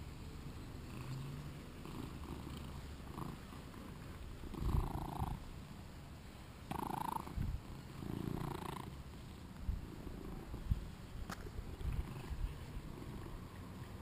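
British Shorthair cat purring steadily close to the microphone. A few louder rubbing noises come through the middle as a hand strokes its fur, with a single sharp click later on.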